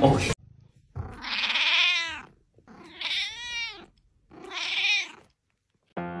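A cat meowing three times, each long call lasting about a second and rising then falling in pitch, with short silences between.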